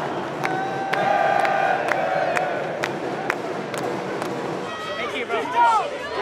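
Stadium crowd and players clapping in unison about twice a second, with voices chanting over the crowd noise. Near the end, close voices take over as the claps stop.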